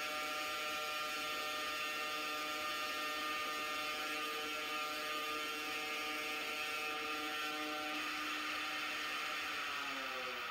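Steady whirring hum of the Ingenuity Mars helicopter's coaxial rotors over a hiss. Near the end the pitch glides down as the rotors spin down after touchdown.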